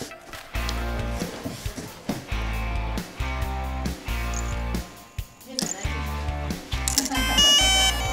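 Background music with a steady bass line. Near the end comes a quick run of bright electronic beeps: the DJI Mavic Pro's power-on tones as the drone boots and its gimbal begins its start-up calibration.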